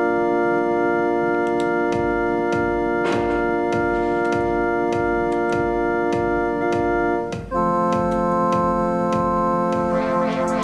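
Electronic music from a homemade MIDI controller: a held, organ-like synthesizer chord played by pressing force-sensitive pads, changing to a new chord about seven and a half seconds in. A steady electronic drum beat of about two kicks a second, with clicks over it, comes in about two seconds in.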